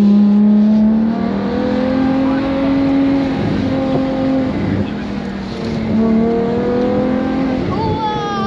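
Ferrari Monza SP2's V12 engine running on the move, its note holding steady and stepping up and down in pitch several times, with wind rushing through the open cockpit.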